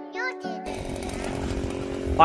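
A song with singing plays in a vehicle cabin and is cut off a little over half a second in by the steady running of a small gas engine, the kind on a powered ice auger used to drill fishing holes through lake ice.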